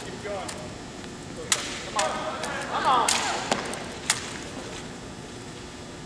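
Sharp slaps and knocks of a drill rifle being handled in a solo armed drill routine, about half a dozen single hits spread over the first four seconds, with a few short squeak-like sounds between them.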